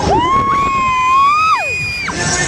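Riders on a spinning fairground ride screaming: two long, high, overlapping screams, one falling away in pitch about one and a half seconds in, the other cutting off near the end.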